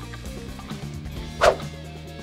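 Online slot game music playing steadily, with one short, sharp sound about one and a half seconds in.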